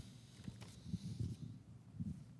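Faint handling and movement sounds: a few soft low knocks and muffled rustles as people shift about, about a second in.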